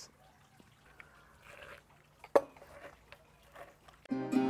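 Quiet handling of bar tools and glassware on a tabletop, with a few faint ticks and one sharp knock a little past halfway, as the muddler goes into the cocktail shaker.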